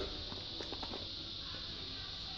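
Light handling noise of a leather baseball glove with a ball in its pocket: a few soft taps and rustles about half a second to a second in, over a steady faint hiss.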